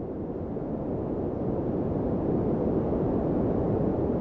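A steady, low rumbling noise with no distinct events, swelling gradually louder.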